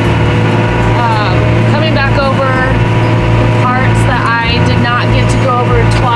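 Tractor engine running steadily under tillage work, heard inside the cab as a low drone with a regular low throb, under a woman's talking.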